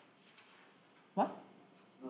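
Quiet classroom room tone broken once by a short, rising exclaimed 'What?'.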